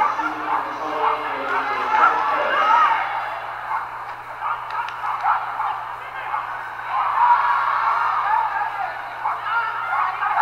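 Indistinct voices calling and talking through most of the stretch, with a steady low hum underneath.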